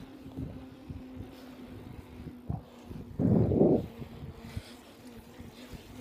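Wind and handling noise on a phone microphone carried on a moving bicycle: low rustling with small knocks and a louder burst of rumble about three seconds in, over a faint steady hum.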